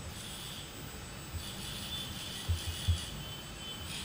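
Small servo motors in a robot's pan-and-tilt head whining faintly as the head tilts upward, over a steady background hum. Three soft low thumps come about two and a half seconds in.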